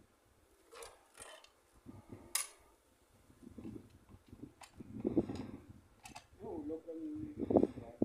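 A few sharp clicks and knocks from hand work on a water pump, followed by people talking in the second half.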